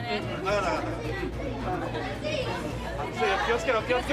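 Studio chatter: several voices talking and calling out over one another, over a steady low hum.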